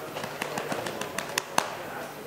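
A quick, irregular run of about nine sharp clicks over a steady room hum, the loudest coming last.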